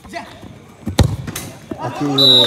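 A football kicked hard on a shot at goal: one sharp, loud thud about halfway through, with a few fainter knocks of the ball around it.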